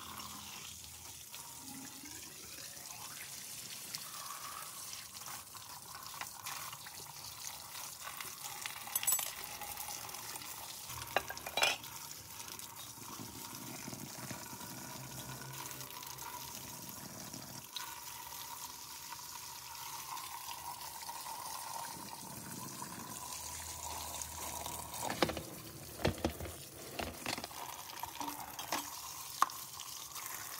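Water running steadily from a wall tap and splashing over metal hand-pump parts being rinsed into a plastic basket. A few sharp knocks of parts being handled come around the middle and in a cluster near the end.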